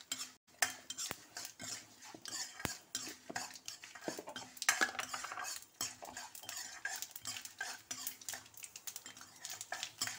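A metal ladle stirring and scraping a tempering of chana dal, red chilli and curry leaves around a metal kadai, with many irregular clicks and scrapes against the pan. Light sizzling of the hot oil runs underneath.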